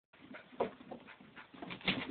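Two dogs play-fighting, making irregular scuffles and short dog noises, the loudest just over a quarter of the way in and near the end.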